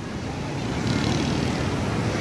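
Steady low noise of wind and breaking surf at a beach, with wind buffeting the microphone.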